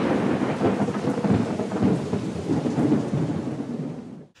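Logo-intro sound effect: a dense rumbling, crackling noise like thunder with rain, fading out near the end.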